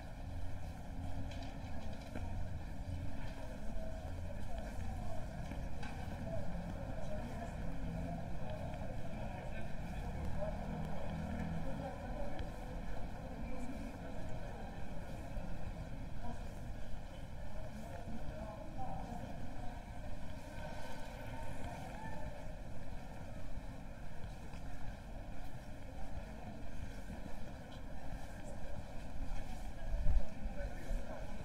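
Ambience of a busy pedestrian shopping street: passers-by talking, over a steady low background rumble.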